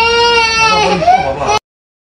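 A baby wailing: one long cry held on a steady pitch, wavering and dropping near its end, then cut off suddenly about a second and a half in.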